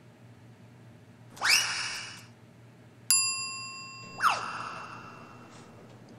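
Comedy sound effects: a rising whoosh, then a bright bell-like ding about three seconds in that rings on briefly, then a whoosh falling in pitch.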